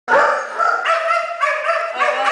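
Dog barking and yipping, a quick run of calls with hardly a gap between them.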